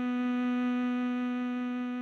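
Tenor saxophone holding one long, steady note of the melody.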